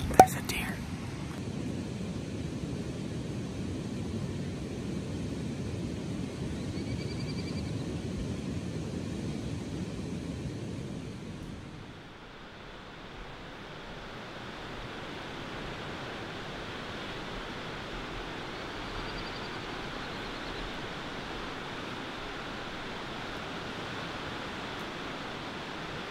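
Steady rushing of a fast glacial river with open-air ambience. About twelve seconds in the sound dips, then continues brighter and hissier, with two faint short high calls.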